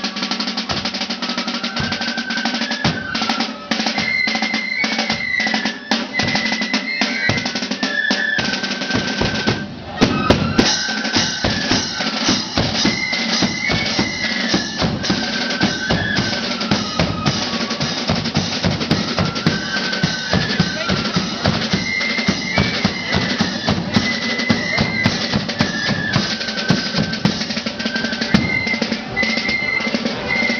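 Marching flute band playing a tune: massed flutes carry the melody over rattling side drums and a steady bass drum beat. About ten seconds in, the drums become louder and denser.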